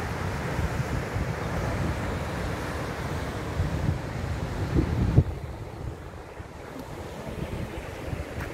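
Wind buffeting the microphone over the steady wash of sea surf breaking on rocks below. The wind gusts hardest about five seconds in, then eases off and the sound drops noticeably quieter.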